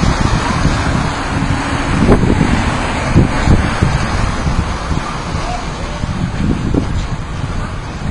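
Wind buffeting the camera's microphone, an irregular low rumble with louder gusts about two and three seconds in, over a steady hiss of outdoor street noise.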